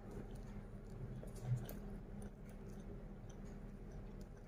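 Faint chewing of a tuna-mayo onigiri, rice wrapped in nori, with scattered small clicks and a brief soft low sound about one and a half seconds in.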